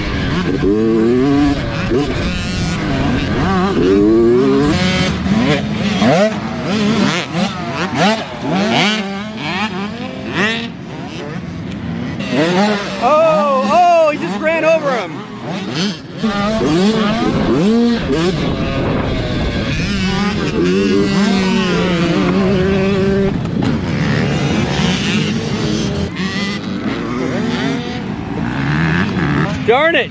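Small two-stroke youth motocross bike engine ridden on a dirt track. The pitch climbs and drops again and again as the throttle is opened and closed.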